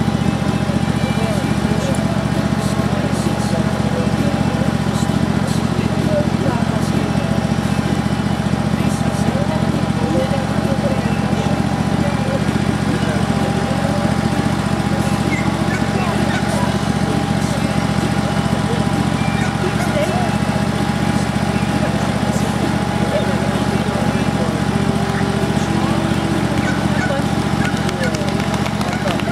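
A steady low motor drone with a constant thin whine above it, unchanging throughout, with faint voices underneath.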